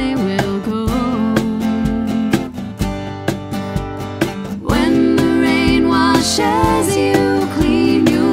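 Acoustic trio music: strummed acoustic guitar and a steady cajon beat under sung vocals. A little past halfway it gets louder as fuller, held vocal harmonies come in.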